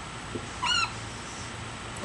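Dry-erase marker squeaking once on a whiteboard, a short high squeak with a slight rise and fall in pitch lasting about a quarter second, near the middle, as a number is written.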